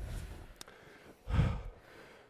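A person's short, heavy breath out after an exercise set, picked up close on a headset microphone, with a faint click shortly before it.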